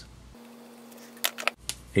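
A few sharp metallic clicks in the second half, from a Jacobs keyed drill chuck and its chuck key being handled, over quiet room tone.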